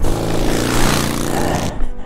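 Suzuki V-Strom 650 V-twin motorcycle going down on a rocky dirt trail: the engine revs under a loud rush of gravel and scraping noise, which stops sharply near the end with a knock as the bike hits the ground. The drop bashes the engine, which has no skid plate.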